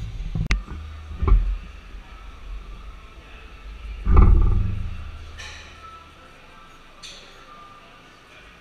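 A few sharp knocks, then a heavy thump about four seconds in that rumbles and dies away over about a second.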